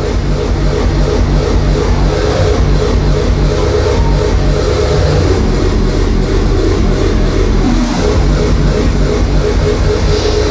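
Loud hardstyle dance music playing over the arena's line-array sound system, a pulsing electronic track over heavy bass, with the bass briefly dropping out about eight seconds in.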